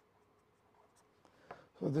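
Marker pen writing on paper: faint scratches and light ticks of the strokes. A man's voice starts near the end.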